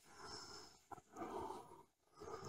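Near silence, with one faint, soft breath-like sound a little over a second in.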